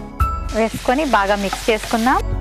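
Chopped vegetables sizzling in a non-stick frying pan over a gas flame as a spatula stirs them, the sizzle coming in about half a second in, under background music with a voice.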